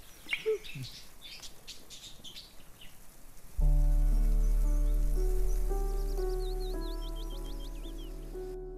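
Birds chirping, then about three and a half seconds in a film score enters suddenly with a deep bass note under a sustained chord and slow, changing melody notes, the loudest sound, fading gently. Quick chirps keep going high above the music.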